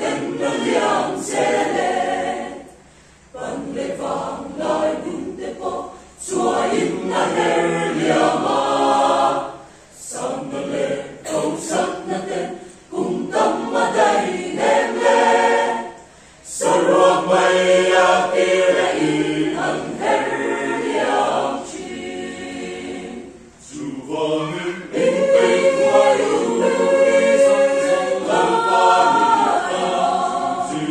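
Mixed choir of men's and women's voices singing a Christian choral song. The phrases are broken by short pauses every few seconds.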